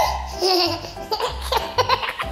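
A toddler laughing in short bursts, over background music with a steady beat.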